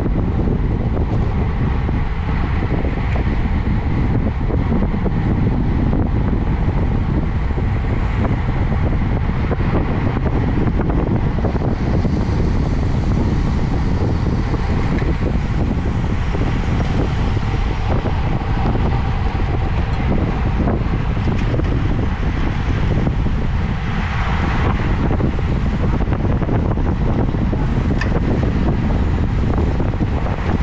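Steady wind rush on an action camera's microphone, with tyre and road rumble, on a road bike riding at about 30 mph in a racing bunch.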